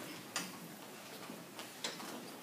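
Two faint, sharp clicks about a second and a half apart over quiet room noise.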